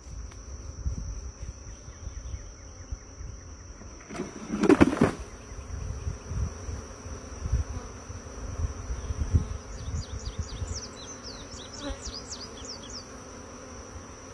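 Honeybees buzzing around an open hive, over a low rumble. A brief louder noise about five seconds in, and a run of short high chirps near the end.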